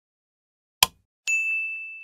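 Subscribe-button animation sound effect: a short click about a second in, then a single bright notification-bell ding that rings on and slowly fades.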